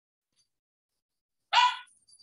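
One short, pitched bark-like animal call about one and a half seconds in, starting sharply and fading quickly.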